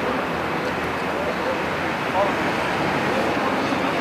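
Steady outdoor background noise with faint distant voices; a brief voice calls out about two seconds in.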